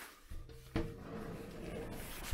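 Handling noise as a shower curtain is pushed aside, with a single sharp knock about three-quarters of a second in.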